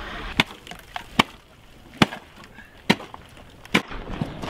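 A series of about six sharp knocks, irregularly spaced roughly a second apart.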